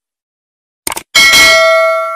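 A quick double mouse-click sound effect about a second in, followed at once by a bright bell ding that rings on and slowly fades: the click-and-bell effect of a subscribe-button animation, with the notification bell being clicked.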